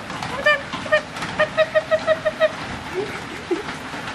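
Young kittens mewing: short, high, arching mews, a few scattered at first, then a quick run of about seven in a row near the middle.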